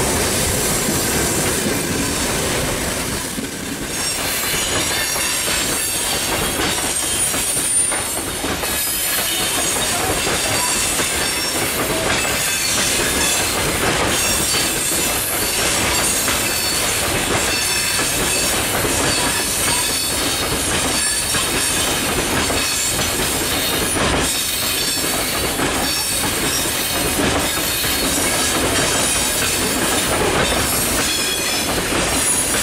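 Railway wagons rolling past at close range: a steady rush of steel wheels with repeated clacking over rail joints and thin, high-pitched wheel squeal. After a brief dip about four seconds in, the sound is a long freight train of open gondola wagons going by.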